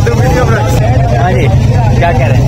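Men talking close to the microphone, voices overlapping, over a steady low rumble.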